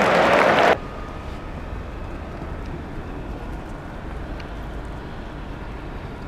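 Loud stadium crowd noise that cuts off abruptly under a second in, giving way to a steady low rumble of outdoor urban background noise.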